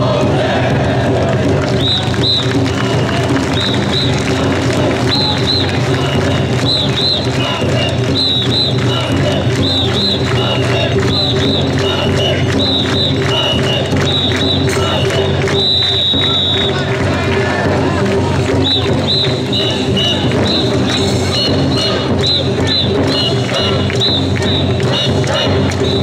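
A crowd of mikoshi bearers chanting the traditional "wasshoi" call over dense crowd noise, with short, shrill whistle blasts repeating in a rhythm.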